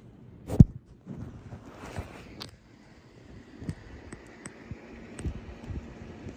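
Handling noise: a sharp thump about half a second in, then faint scattered clicks and rustling.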